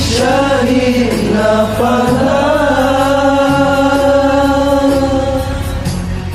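Acehnese song: a sung vocal line in a chant-like style, with long held notes over a steady low instrumental backing.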